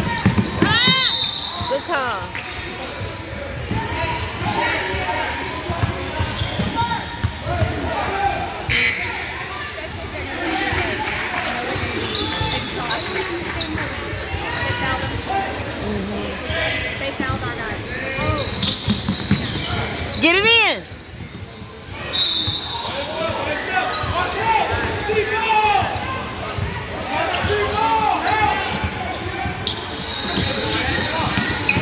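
Basketball game in a large echoing gym: sneakers squeaking on the hardwood court, with sharp rising-and-falling squeaks about a second in and again around twenty seconds in, a ball bouncing, and a steady background of players' and spectators' voices.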